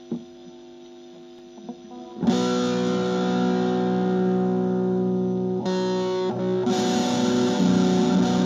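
Electric guitar: a couple of soft picked notes, then a loud chord struck about two seconds in that rings on, struck again twice in the second half.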